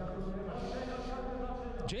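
A man's voice holding one long, level vowel for nearly two seconds, then commentary speech starting near the end.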